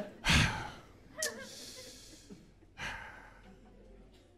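A man sighing and breathing out heavily, three breaths with short pauses between them, the first the loudest.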